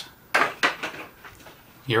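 Plastic 4K Blu-ray keep case and cardboard slipcover being handled: a few quick clacks and scrapes about a third of a second to a second in.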